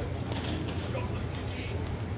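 Busy airport terminal ambience: a steady low hum under the clatter of people walking past, with faint voices.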